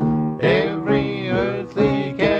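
Two men singing a gospel song as a duet with instrumental accompaniment, the held notes sung with a wavering vibrato.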